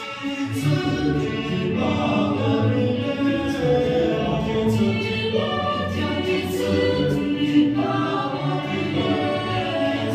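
A Chinese Christian song played for a dance: voices singing in chorus, holding long notes over instrumental accompaniment.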